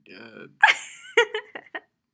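A person laughing: a low voiced sound, then a sharp loud burst about half a second in that breaks into several short, gasping pulses.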